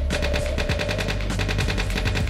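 An attack helicopter's automatic cannon firing one continuous burst, about ten shots a second, over a steady low rumble.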